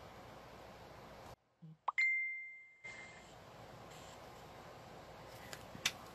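A single bright ding about two seconds in: one clear, high tone with a sharp start that fades away over about a second, over faint room tone.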